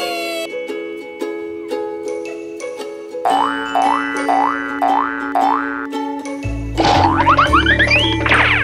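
Background music of steady held notes. About halfway through come four quick rising sweeps in a row, and near the end a flurry of fast rising glides.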